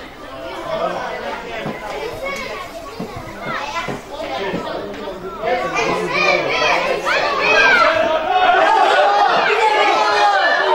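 Many children's voices shouting and calling at once, growing louder about halfway through and staying loud to the end.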